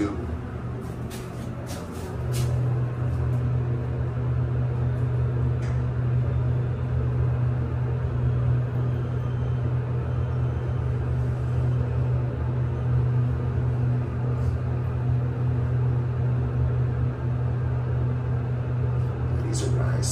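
Mitsubishi-modernised traction elevator descending, heard from inside the cab as a steady low hum of the hoist machine and the car's travel. The hum grows louder about two seconds in as the car comes up to speed.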